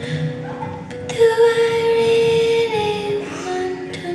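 Live folk band music: a high, wordless sung note held for about a second and a half, then falling in steps, over acoustic and electric guitar.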